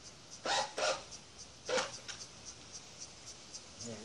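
A dog barks three times: two quick barks about half a second in, then one more a second later.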